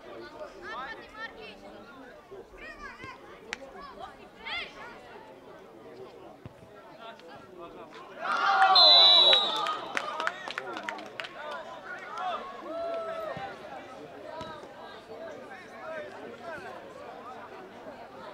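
Distant shouts and calls of young footballers and onlookers across an open pitch, with a few sharp knocks. About halfway through comes a loud burst of shouting with a short, high referee's whistle blast.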